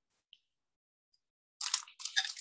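Near silence for most of the time, then near the end a short, crackly rustle of a plastic or wax-paper sheet as the clay on it is handled.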